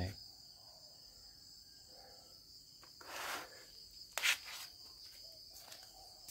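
Steady high chirring of crickets in the background, with a short noisy rustle about three seconds in and a sharper brief handling noise a little after four seconds.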